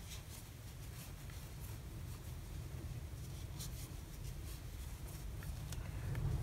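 Faint rustling and scattered light ticks of acrylic yarn being worked with a metal crochet hook, over a steady low hum.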